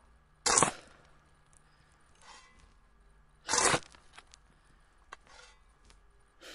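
Slow, heavy crunching noises: two loud ones about three seconds apart, each about a third of a second long, with fainter ones between them and a single small click near the end.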